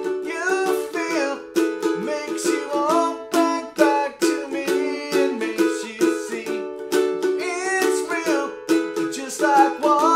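Ukulele strummed in a steady rhythm, with a man singing over it.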